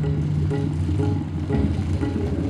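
Recorded music accompanying a stage dance-drama, carried by sustained low drone notes, with a new phrase coming in about three-quarters of the way through.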